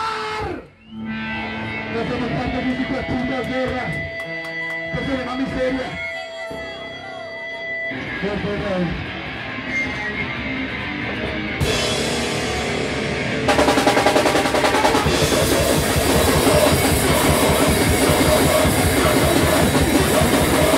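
Loud live rock band with drum kit and electric guitars. Sound cuts out briefly about a second in, then a sparser stretch with held tones follows, and from about 13 seconds in the full band plays loud and dense.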